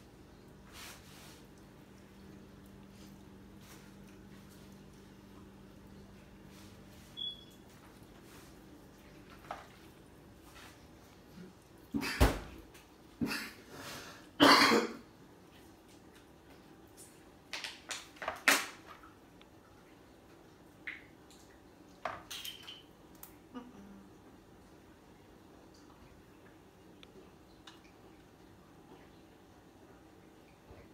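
A black plastic slotted spoon knocking and scraping against a red plastic mixing bowl as stuffing is scooped out and packed into green bell peppers: a few short bursts of clatter, loudest about twelve to fifteen seconds in, between quiet stretches.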